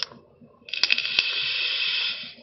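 A long draw on a mesh-coil sub-ohm vape tank on a box mod, beginning under a second in: a steady airy hiss with a fine crackle of e-liquid on the firing coil and a couple of sharp clicks, held to the end. A brief sharp hiss sounds at the very start.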